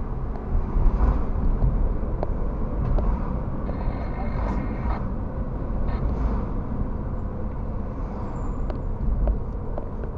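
Car driving through city traffic, heard from inside the cabin through a dashcam microphone: a steady low rumble of road and engine noise. About four seconds in there is a brief high, steady squeal lasting about a second.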